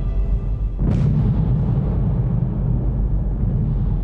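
A dramatised impact effect: a sudden deep boom about a second in that fades into a low rumble, standing for the Progress cargo ship striking the Mir space station. Dark droning soundtrack music runs underneath.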